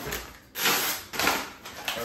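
Brown paper mailer bag crinkling and rustling as it is handled and an item is pulled out of it, in two loud bursts starting about half a second and just over a second in.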